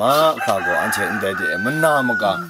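A rooster crowing, one long held call starting about half a second in, over a man talking.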